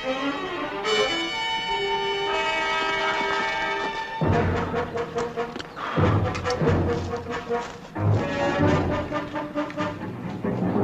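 Orchestral dramatic score: held brass chords, then from about four seconds in a heavier, driving passage with low pounding beats.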